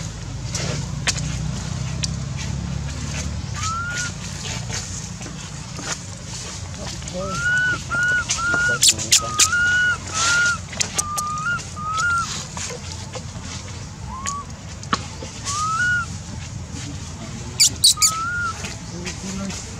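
Young long-tailed macaque giving a run of short, high, arched coo calls, several in quick succession through the middle, with a few sharp clicks between them.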